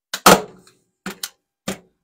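Handheld metal staple gun firing a long staple into a wooden block: one loud snap about a quarter second in, followed by three lighter clicks. The staple does not go all the way into the wood.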